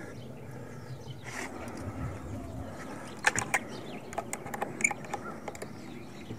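Quiet outdoor background with a handful of short, sharp clicks and light knocks, a cluster of them about three seconds in and a few more a second later.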